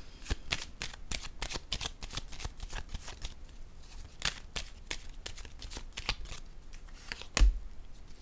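A deck of oracle cards being shuffled by hand: a quick, irregular run of sharp card clicks, with one heavier thump near the end.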